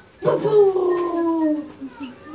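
One long drawn-out vocal sound that slides slowly down in pitch over about a second and a half.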